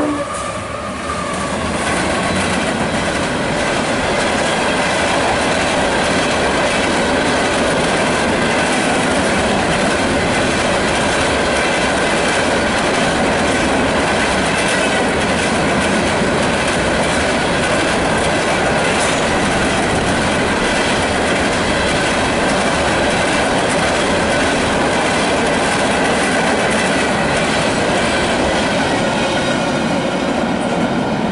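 CSX freight locomotive passing close by, then a long string of empty open-top hopper cars rolling past: a steady, loud rumble and clatter of steel wheels on the rails.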